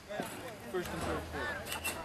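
Indistinct chatter of spectators' voices, with a low steady hum coming in about halfway through and a couple of sharp clicks near the end.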